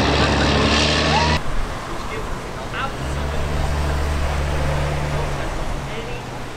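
The engine of a large amphibious tour vehicle runs steadily as it drives past, then cuts off abruptly about a second and a half in. A second steady, low engine hum follows from about three seconds in until shortly before the end.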